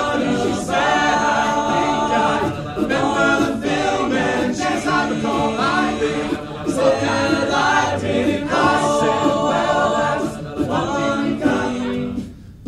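An a cappella vocal group singing a pop song: a lead voice over layered backing harmonies, with beatboxed percussion keeping the beat.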